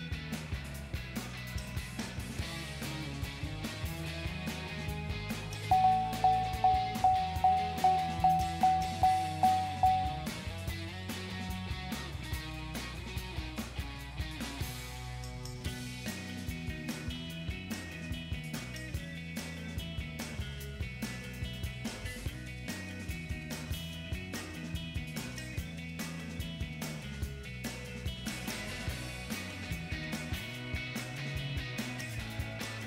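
Background music throughout. About six seconds in, a single-pitch electronic chime repeats about three times a second for roughly four seconds and then stops: the truck's warning chime bonging while its modules reset during the ECU flash.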